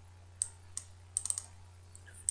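Computer mouse clicking: a single click, another a moment later, then a quick run of three or four clicks a little past the middle, over a faint low electrical hum.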